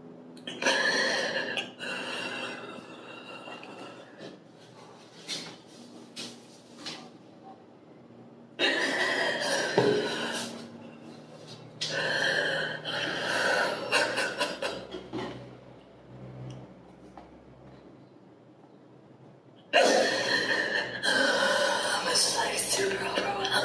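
A woman crying with emotion: spells of shaky, sobbing voice of a few seconds each, with quieter breathing and sniffles between.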